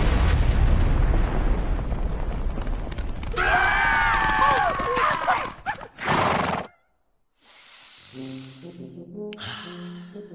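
Cartoon fart sound effect: a loud, deep blast of rushing noise lasting about three seconds, followed by several wavering pitched sounds and a short second burst. After a brief silence, soft music begins.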